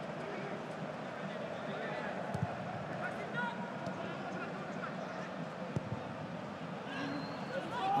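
Pitch-side sound of a football match in an empty stadium: faint, distant shouts of players over a steady background noise, with a couple of short thuds of the ball being kicked.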